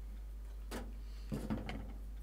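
Small handling noises of craft pieces being moved on a work table: a short rustle, then a quick cluster of clicks and scrapes, over a steady low electrical hum.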